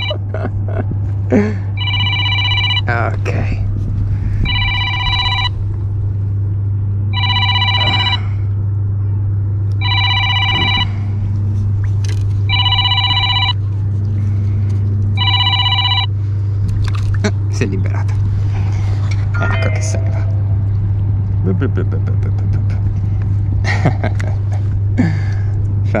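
A phone ringtone ringing in repeated bursts of about a second each, roughly every two and a half seconds, then stopping about 16 seconds in: an incoming call left unanswered.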